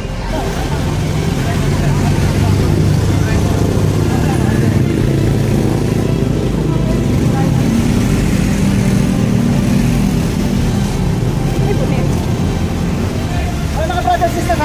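Motor vehicle engine running close by in street traffic: a low steady rumble, with a hum that comes up in the middle.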